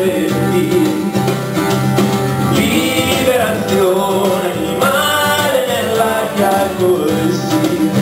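A man singing in Italian, with long wavering held notes, to his own acoustic guitar accompaniment in a live acoustic song.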